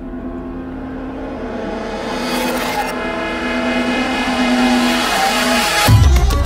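Electronic music intro build-up: sustained synth chords under a rising noise sweep that grows steadily louder, ending in a deep bass hit at the very end.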